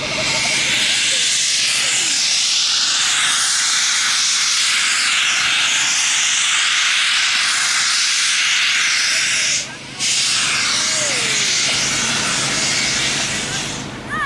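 Ex-GNR V Class 4-4-0 steam locomotive No.85 Merlin blowing steam from its open cylinder drain cocks: a loud, steady hiss that breaks off for a moment about ten seconds in, then carries on until near the end.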